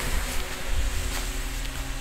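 Wind blowing over the microphone outdoors in open country: a steady low rumble with an even hiss over it.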